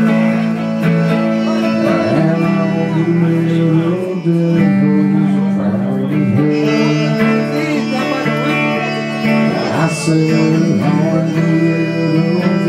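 Live country roots band playing an instrumental break: electric guitar chords with a fiddle played over them.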